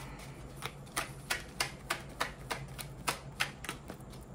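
Tarot cards being shuffled by hand, the cards clicking against each other in a steady run of sharp clicks, about three a second.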